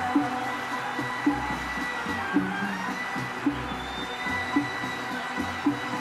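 Egyptian Arabic orchestral music in an instrumental passage. A drum pattern with a strong stroke about once a second runs under long held melody notes.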